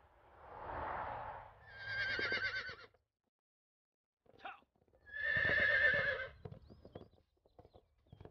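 Horse whinnying twice: a wavering neigh about two seconds in and a louder one about five seconds in. Irregular hoofbeats follow near the end.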